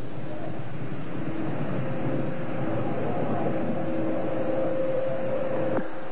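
Steady hiss and hum of an old television news broadcast's audio feed, with a faint steady tone running under it.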